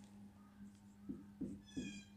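Felt-tip marker writing on a whiteboard: a few soft strokes about a second in, then a short high squeak of the tip near the end. A faint steady hum runs underneath.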